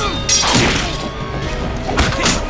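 Action music with fight sound effects over it: a few hard hits, the strongest coming about half a second in and another near the end.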